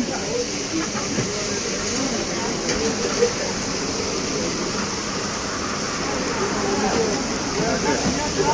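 Indistinct chatter of diners at nearby tables over a steady hiss.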